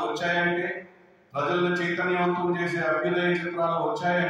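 A man's voice through a handheld microphone, intoning in long, steady held notes like a chant, in two phrases with a short break about a second in.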